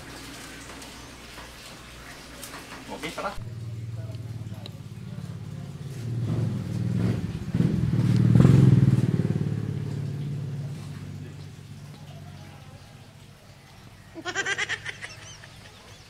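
Motorcycle engine sound that grows louder to a peak about halfway through, then fades away.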